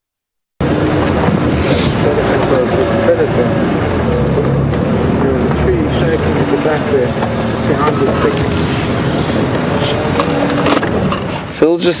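Safari vehicle's engine running as it drives along, its pitch wavering with the load. The sound cuts in suddenly about half a second in, after a brief silence.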